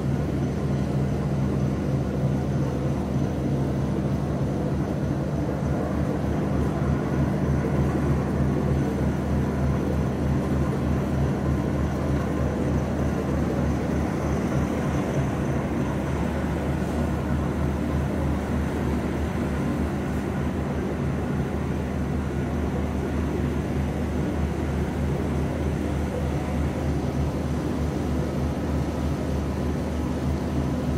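Steady low mechanical drone of a docked cruise ship's machinery, a constant hum with several low tones and no change in pitch or level.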